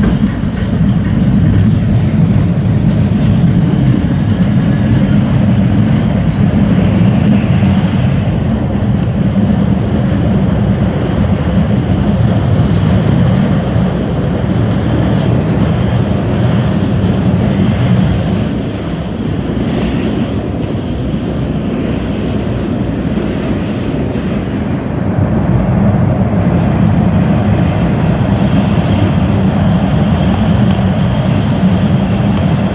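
Older MBTA Red Line subway car running through the tunnel, heard from inside the car: a loud, steady, low rumble of wheels and motors on the rails. The rumble eases for several seconds past the middle, then builds again near the end.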